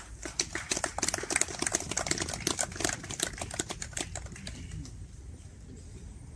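A crowd applauding: dense, irregular clapping that is loudest in the first few seconds and thins out toward the end.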